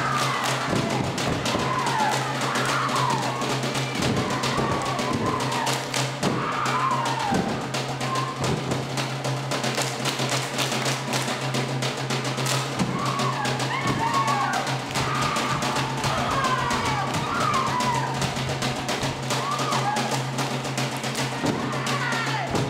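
Live Samoan siva music: a group of voices singing, accompanied by guitar and drum, with frequent sharp percussive hits.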